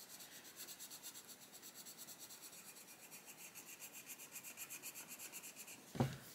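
Coloured pencil shading on paper with quick, even back-and-forth strokes, a faint scratchy rubbing.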